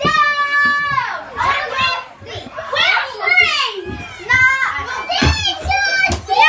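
Children shouting and squealing in play: a long held high-pitched shout at the start, then a string of excited calls that rise and fall in pitch.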